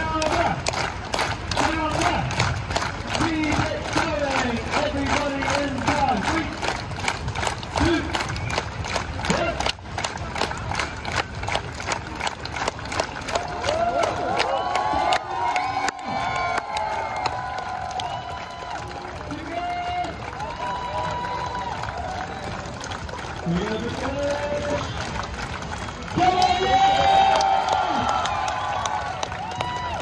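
Large outdoor crowd clapping together in a steady rhythm, fading out about ten seconds in; after that, scattered crowd voices and cheers, with a louder burst of cheering near the end.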